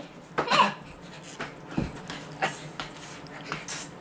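A brief high vocal cry from a person just after the start, then a handful of scattered thuds and slaps from a child's punches and kicks landing during play sparring, the loudest a low thump just under two seconds in.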